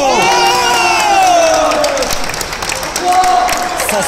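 Spectators cheering and shouting after a basketball shot: one long, loud shout falling in pitch over about two seconds over other voices, then a shorter shout about three seconds in.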